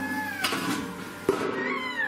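A young child's high-pitched voice making a few short drawn-out calls, some rising in pitch, over background music.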